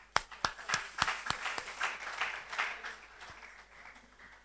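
Clapping and applause: a run of sharp hand claps, about three a second, over a spread of clapping that fades away by about three seconds in.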